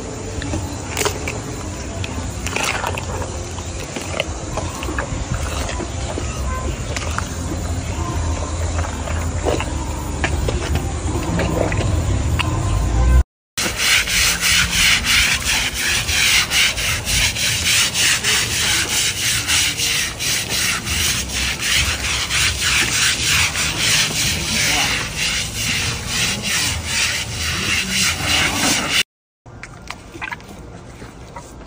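An elephant chewing bananas close to the microphone, with a low rumble building toward a sudden cut. After the cut comes the loudest part: water from a hose spraying onto the sole of an elephant's foot as it is scrubbed, a rasping hiss with fast, regular strokes.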